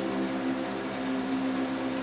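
A steady low hum made of several held tones, unchanging throughout.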